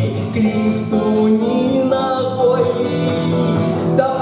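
Steel-string acoustic guitar strummed as a song accompaniment, played steadily through an instrumental break.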